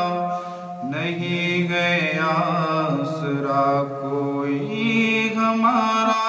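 A male voice chanting an Islamic devotional recitation in long held notes, stepping to a new, higher phrase about a second in and shifting pitch again near the end.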